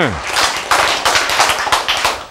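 An audience clapping: a dense, irregular run of many hand claps.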